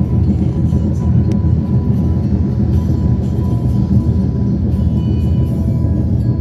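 Steady low road rumble of a car driving at speed across a bridge, with music playing over it.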